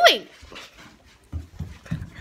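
A pet's short whining call that rises and then falls in pitch, right at the start, followed a little past the middle by a few soft, dull thumps.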